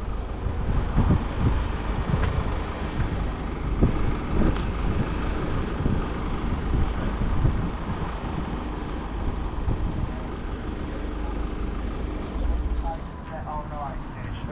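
Wind buffeting the microphone: a steady, uneven low rumble with a rushing hiss over it.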